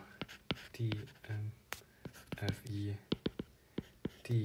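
A stylus tip tapping and scratching on a tablet's glass screen as handwriting and dotted ellipses are written: a quick run of sharp taps, with a man's low murmuring voice in between.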